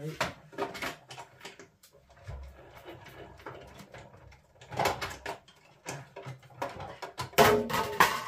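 Irregular knocks and clicks of plates and card being handled and run through a hand-cranked Stampin' Up Cut & Emboss die-cutting machine, with a low rumble a little after two seconds in. The loudest clatter comes near the end, as pieces are dropped.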